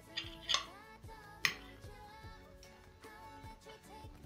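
Quiet background music with a gentle melodic line, with a few short sharp clicks of a metal fork touching the plate, the sharpest about one and a half seconds in.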